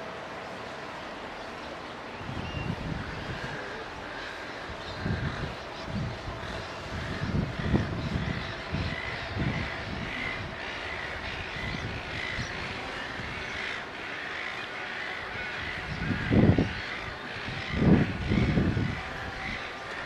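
Wind gusting on the microphone in irregular low bursts, the strongest near the end, over a steady outdoor hiss, with faint bird calls in the background.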